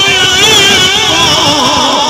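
A man's singing voice through a microphone and loudspeakers, drawing out a long, wavering melismatic line.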